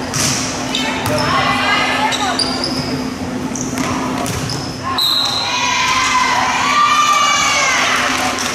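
Volleyball rally in a gym: sharp smacks of the ball being hit, over a crowd and players shouting. The shouting and cheering swell from about halfway through, as the point ends.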